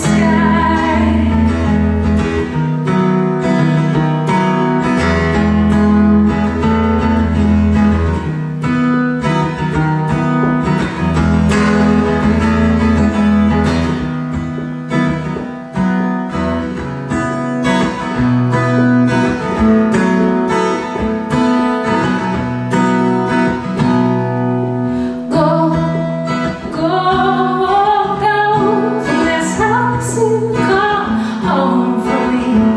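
Acoustic guitar played solo in an instrumental break: chords over a repeating low bass note. A wordless voice line comes in near the end.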